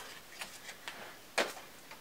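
A few faint ticks, then one sharper click later on, from handling a single eyeshadow pan and its small plastic package.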